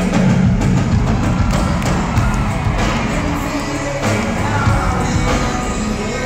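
A live rock band playing at full volume, drums hitting steadily under electric guitars and bass, heard from out in the audience of a large hall.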